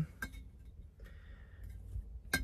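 Glass jar with a metal screw lid handled, giving one light clink about a fifth of a second in, over a low steady hum.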